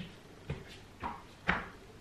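Hands and sneakered feet knocking onto an exercise mat over a wooden floor as a person walks down into a plank: four soft knocks about half a second apart, the last the loudest.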